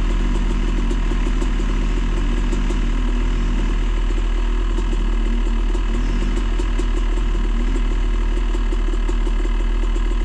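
A dirt bike's engine idling steadily close up. Behind it, the engine of an ATV in a mud hole rises and falls in pitch as it works through the mud.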